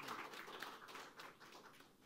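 Faint audience applause, a patter of many claps that thins out and dies away near the end.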